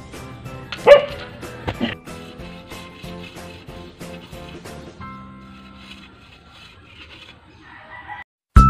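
Background music with a steady beat, over which a dog barks twice, about a second in and again just under a second later.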